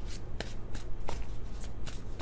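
A tarot deck being shuffled by hand, the cards flicking and slapping together in repeated short strokes, about three a second.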